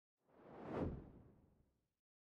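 A single whoosh sound effect marking a transition between screens: one swish that swells up, peaks a little before the middle and fades away, about a second long.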